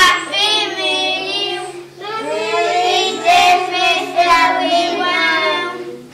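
A group of young children singing together in long held notes, in two phrases, the second starting about two seconds in.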